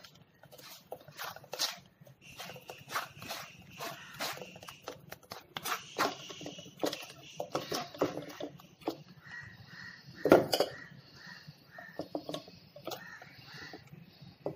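Steel spoon scraping and pressing a thick ground paste through a plastic-framed mesh strainer over a steel bowl: irregular scrapes and light clicks, with a sharper clatter about ten seconds in.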